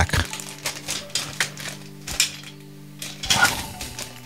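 Clear plastic packaging bag crinkling and clicking in the hands as it is opened, a series of short sharp rustles.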